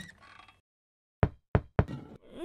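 A small ball dropping onto a wooden floor and bouncing: three sharp knocks coming quicker one after another. It is a cartoon sound effect.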